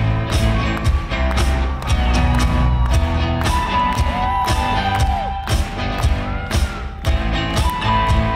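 Live rock band playing an instrumental passage: a drum kit keeps a steady beat of about two hits a second under bass and held notes. A few sliding, bending notes come in the middle.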